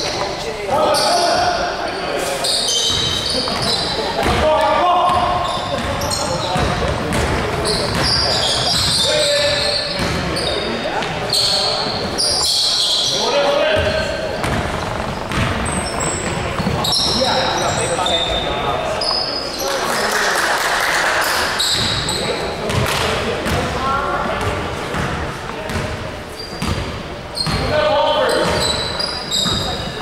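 Pickup basketball game in a gymnasium: the ball bouncing on the hardwood floor with many short knocks, and players calling out to each other, all echoing in the large hall.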